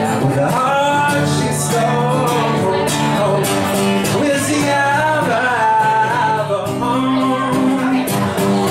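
A man singing into a microphone while strumming an acoustic guitar, in a live solo performance.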